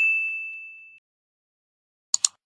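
A single bright ding, the chime sound effect of an animated "+1 Like" button, ringing out and fading away within about a second.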